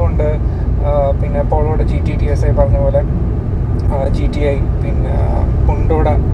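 A man talking over the steady low rumble of a moving car, heard from inside the cabin.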